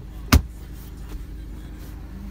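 One sharp knock about a third of a second in, over the steady low hum of the BMW 320d's four-cylinder diesel engine idling.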